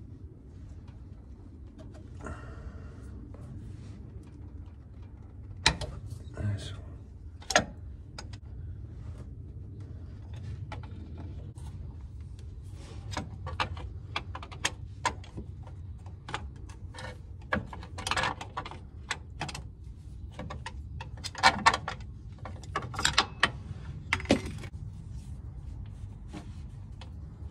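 Scattered metallic clicks and knocks of a box-end wrench working a tight 17 mm hex filler plug on a VW Beetle transmission case, over a steady low hum. The clicks come in clusters, most thickly in the second half.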